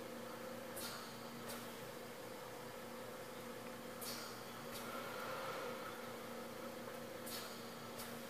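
Faint steady hum of a Dell Inspiron 531 desktop computer running as it restarts, with a few soft clicks.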